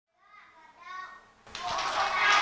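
A single voice calls out, then about a second and a half in a class of young children starts singing together and clapping along, much louder.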